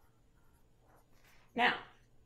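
Sharpie felt-tip marker writing on a paper pad, a few faint scratching strokes as a word is finished.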